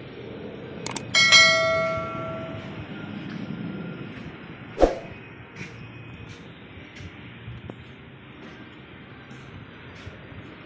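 A sharp metallic clang about a second in that rings on for about a second and a half like a struck bell, then a duller knock near five seconds, over a steady low rumble of steel crusher machinery.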